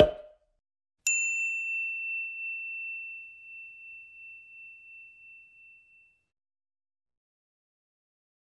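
A single bell-like ding sound effect: one clear high tone struck about a second in, ringing out and fading away over about five seconds. A short soft pop sounds at the very start.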